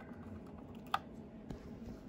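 A light plastic click about a second in, with a fainter tap a little later: fingers handling a plastic scale model car.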